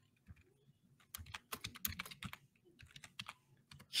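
Typing on a computer keyboard: a faint, irregular run of keystrokes starting about a second in and lasting a couple of seconds.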